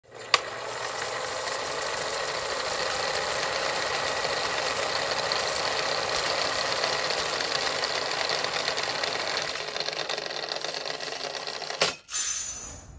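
Old film projector sound effect: a steady mechanical clatter with hiss. It opens with a sharp click and thins out over the last two seconds before stopping abruptly.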